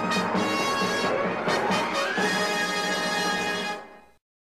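Intro music, fading out near the end.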